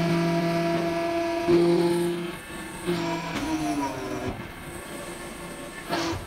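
Hydraulic interlocking brick press running through its cycle: a loud, steady hydraulic whine that holds, cuts and changes pitch a few times as the press shifts between stages, with a few sharp clunks from the mould and ram moving.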